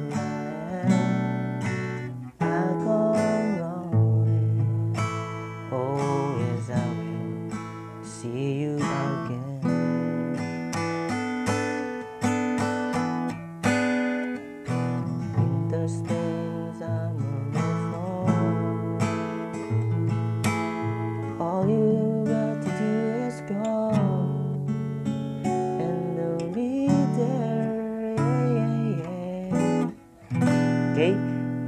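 Acoustic guitar with a capo, played continuously through a chord progression of G, Gmaj7, C, Am7 and D7 with regular strums.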